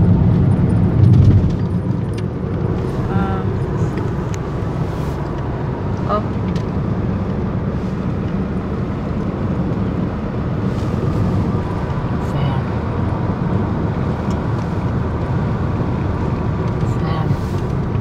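Steady road and engine rumble heard inside the cabin of a moving car, without any change in pace.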